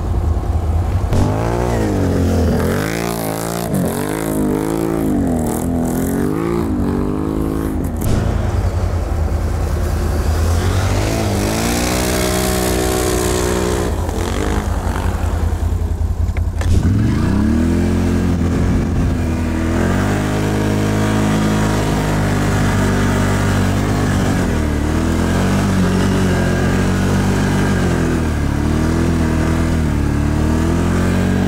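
ATV engine pulling through deep snow, its revs rising and falling again and again for the first several seconds, then running steadier, with a short drop and a quick climb in revs about halfway through.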